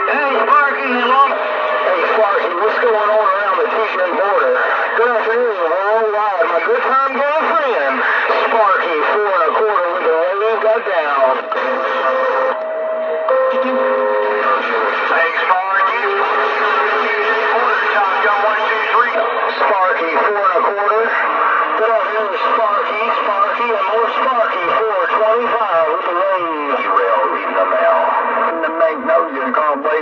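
Galaxy DX 959 CB radio receiving busy channel traffic through its speaker: several voices overlapping, warbling and distorted, with the thin, clipped sound of a radio receiver. A few steady whistle tones come through about halfway.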